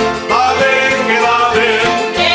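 Canarian folk ensemble playing live: many guitars and other plucked strings strummed together, with a singing voice over them.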